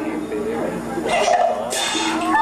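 A Teochew opera actor's voice in short exclaimed and spoken phrases, over a steady held tone from the stage accompaniment.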